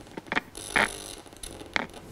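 Needle EMG machine's loudspeaker giving a few brief, irregular crackles, the loudest a little under a second in. This is insertion activity as a concentric needle electrode enters the triceps, the sign that the needle tip lies in muscle tissue.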